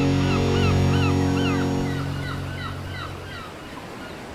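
Seaside outro sound effects: a low, steady horn-like drone that fades out about three seconds in, under repeated short seabird cries and the wash of surf, which is left on its own near the end.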